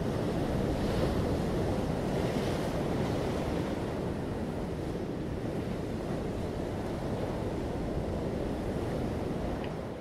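Ocean surf: a steady, even wash of waves, ending abruptly at the very end.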